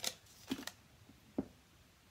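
Three light handling sounds of stamping supplies on a desk mat: a sharp click at the start, a softer tap about half a second in, and a short dull knock near the middle.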